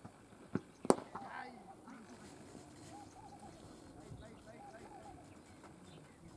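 One sharp crack of a cricket bat hitting the ball about a second in, just after a fainter knock; then faint, distant calls from players.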